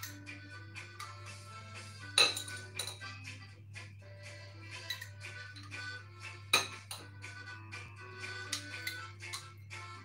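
A spoon clinking and scraping against a glass jam jar and a ceramic ramekin as strawberry jam is scooped from one into the other, with two sharper clinks, about two seconds in and six and a half seconds in. Soft background music plays throughout.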